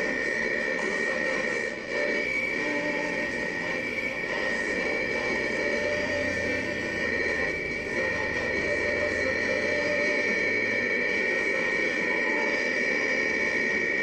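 Crystal radio output of steady hiss and static with a high, unbroken whine, starting abruptly as the set is switched. No station's speech or music comes through.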